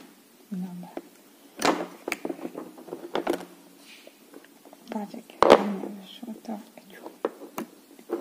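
Plastic Play-Doh toy parts and modelling tools handled on a tabletop: irregular light knocks and clicks, the loudest about halfway through, with soft murmured speech between them.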